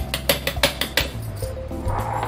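A stainless-steel strainer knocked against the rim of a steel mixer-grinder jar to shake out soaked rice: a quick run of about nine metal clinks through the first second, then they stop.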